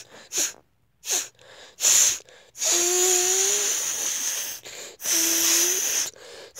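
A child making loud, wheezy hissing breath noises through bared teeth right at the microphone. There are three short bursts, then a long one of about two seconds and another of about a second, each with a faint squeaky tone inside the hiss.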